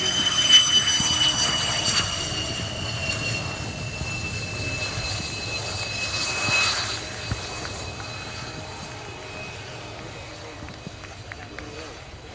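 F-16AM Fighting Falcon's Pratt & Whitney F100 turbofan at low power on the landing rollout: a high whine of several tones that slowly falls in pitch and fades steadily as the jet rolls away down the runway.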